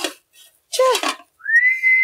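A man whistling one long, clear, steady note through pursed lips, sliding up into it at the start. It comes after a brief vocal sound.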